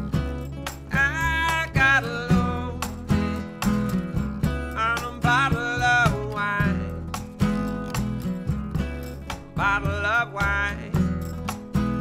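Blues song played live on acoustic instruments: a plucked upright bass and a strummed acoustic guitar, with a man singing three short phrases about a second, five seconds and ten seconds in.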